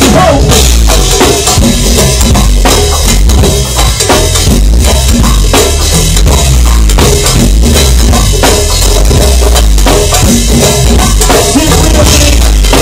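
Live band playing loud with a driving drum kit beat and heavy bass.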